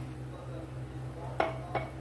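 Two short ringing clinks of kitchen glassware set down on the counter, about a third of a second apart, over a steady low hum.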